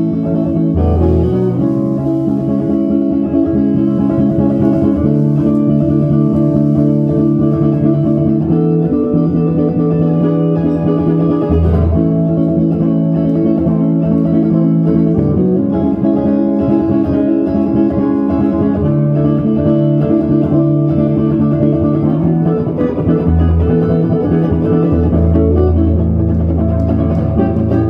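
Live band playing a smooth-jazz guitar instrumental: electric guitar over sustained keyboard chords and electric bass.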